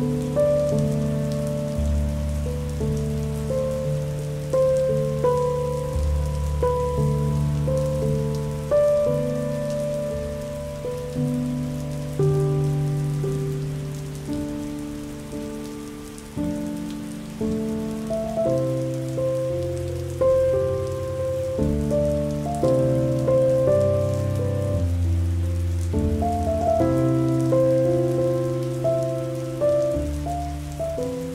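Slow, calm instrumental music, its notes struck and left to fade over low held bass notes, mixed with a steady patter of rain.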